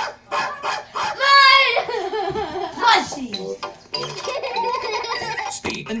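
People talking and laughing in a small room, with one loud, high-pitched vocal sound about a second in.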